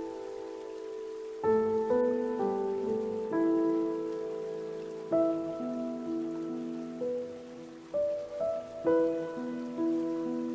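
Slow, gentle solo piano melody, single notes and soft chords struck about once a second and left to ring out, over the faint steady rush of a flowing stream.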